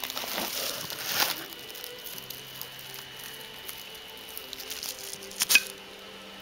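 Bubble wrap and paper packaging crinkling as they are handled, loudest in the first second or so, then quieter rustling, with one sharp click about five and a half seconds in.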